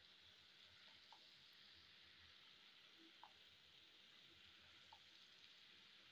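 Near silence, with faint sizzling of sliced onions frying in oil in a pan and three faint ticks.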